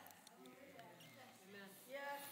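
Near silence: room tone with faint, scattered voices in the room.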